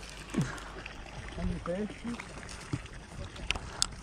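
A few short, faint snatches of speech over a steady low rumble, with a couple of sharp clicks near the end.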